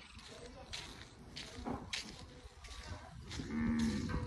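A cow moos once, briefly, near the end, over the steady rhythm of footsteps on a dirt road.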